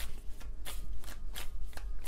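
A deck of tarot cards being shuffled by hand: a quick run of soft card flicks, about four or five a second.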